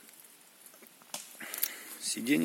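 Faint rustling with a few short clicks in the second half, the sound of someone moving about on dry leaf litter.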